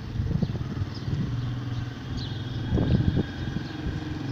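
A motor vehicle's engine running with a steady low hum in outdoor street noise, with a brief louder patch near the end.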